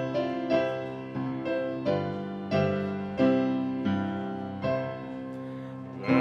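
Piano playing a hymn's introduction, chords struck about every two-thirds of a second and each one dying away before the next.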